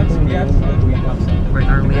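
Car cabin while driving: a steady low rumble of engine and road noise, with voices chattering over it.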